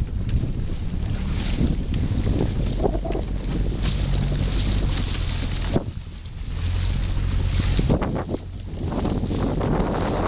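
Wind buffeting the microphone over a steady low hum from the boat carrying the camera, dipping briefly about six seconds in and again a little after eight seconds.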